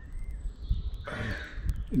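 A crow cawing: one harsh call about a second in, overlapping a man's brief "uh".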